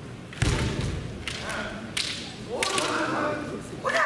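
Kendo exchange: a heavy stamping footfall thuds on the wooden floor about half a second in. Bamboo shinai crack sharply several times, and in the second half the fencers let out long kiai shouts.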